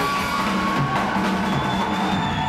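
Rock band music carried by a drum kit's beat.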